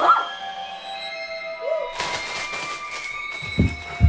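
Background music with a dog whimpering briefly: once at the start and once more, shorter, just under two seconds in. A couple of low thumps near the end.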